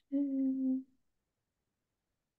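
A woman hums a short 'mmm' on one steady note, lasting under a second near the start.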